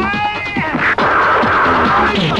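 Action-film fight soundtrack: background music under a high wailing cry that rises and falls in the first half second, a sharp hit about a second in, then a hissing swish.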